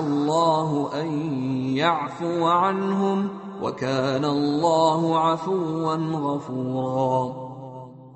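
Quranic recitation in Arabic: one reciter chanting a verse in long held, melodic phrases with ornamented turns in pitch, trailing off just before the end.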